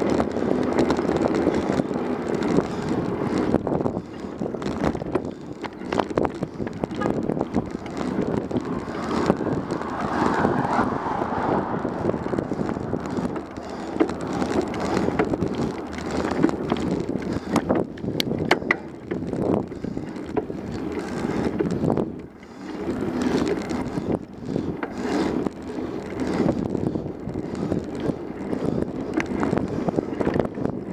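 Wind on the microphone and tyre and road noise from a bicycle-mounted camera while riding, with frequent small rattles and clicks from the bike and mount over the pavement.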